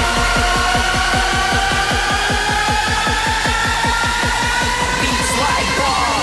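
Hardstyle dance music building up: a fast, even roll of kick drums, about five a second, runs under slowly rising synth tones. Near the end a cymbal crash comes in and the roll gives way to a held bass.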